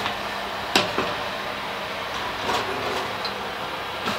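Steady, even whooshing noise with one sharp click about three-quarters of a second in.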